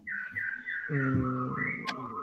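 A high, thin whistling sound that wavers and steps up and down in pitch, heard over an online video call. A faint voice comes in briefly about a second in, and there is a sharp click just before the end.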